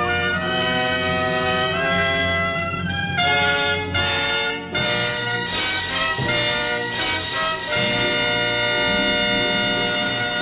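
Orchestral radio-drama music cue at the end of the play, with brass to the fore, moving through a series of held chords.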